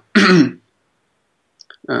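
A man's short vocal sound of about half a second, then about a second of dead silence and a couple of faint clicks before his speech resumes near the end.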